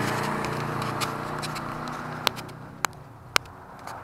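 A steady engine drone that fades away over the first two seconds, then three sharp clicks about half a second apart.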